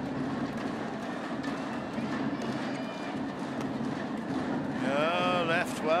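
Badminton arena sound: a steady crowd murmur with scattered sharp clicks of shuttlecock hits and footwork on the court, and a short pitched cry with a bending pitch about five seconds in.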